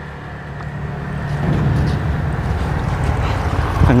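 Strong wind buffeting the microphone: a low, rushing rumble that swells over the first second and a half and then holds steady.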